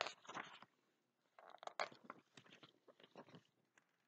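Faint crackling and rustling of a hardcover picture book being opened and its pages handled, in two short clusters: one right at the start and another from about a second and a half in.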